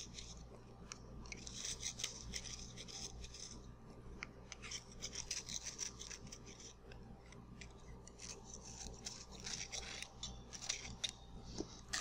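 Soil knife scraping across the end of a soft soil specimen, its blade drawn along the edge of a metal trimming device to trim the surface flat. The scrapes are faint and come as a series of separate strokes of uneven length.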